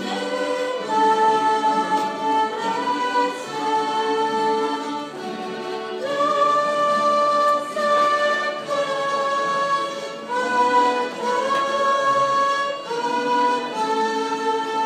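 Small church orchestra with violins playing a slow melody in long held notes that move step by step, each held about a second or more.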